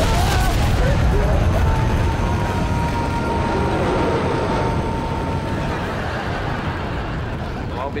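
Rocket-launch sound effect: a loud rushing roar of engine thrust that slowly fades away over the second half, with a thin steady whistle running through the middle.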